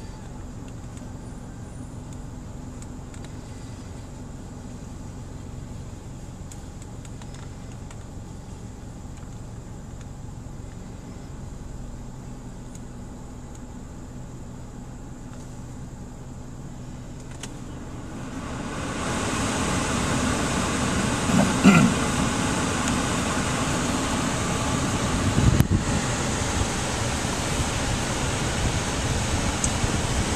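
Hyundai Sonata cabin with the engine idling as a low steady hum. About two-thirds of the way in, the air-conditioning blower comes up to maximum and turns into a loud, even rush of air. A couple of light knocks fall under the rush.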